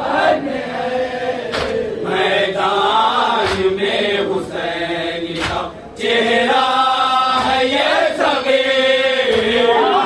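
A group of men chanting a Shia mourning salaam in Urdu, drawn-out melodic lines sung together. The chant dips briefly and comes back louder about six seconds in, and a few sharp hits sound through the first half.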